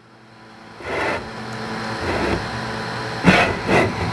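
The print bed of a PowerSpec i3 Plus 3D printer being slid forward by hand along its rods with the motors disabled: a steady rolling rumble that builds over the first second, with two louder bursts near the end.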